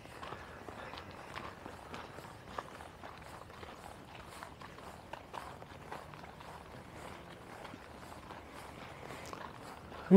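Faint footsteps of people walking at a steady pace on a packed dirt woodland trail, soft crunching steps at roughly two a second.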